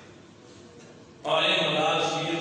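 A man addressing a gathering in Urdu: a pause of about a second, then his voice comes back loud in a long, drawn-out, sing-song phrase.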